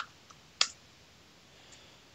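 A few isolated clicks from a computer keyboard and mouse, the loudest about half a second in and a faint one near the end.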